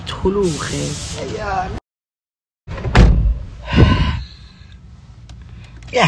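Speech from a phone live stream that cuts out to a short dead silence, followed by a loud thump and, just under a second later, another short loud sound, then quieter background noise.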